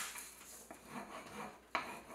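Wooden spoon rubbed back and forth over packing tape on paper, a soft scraping rub as the tape is burnished onto a laser print so the ink sticks to it. A single sharp knock near the end.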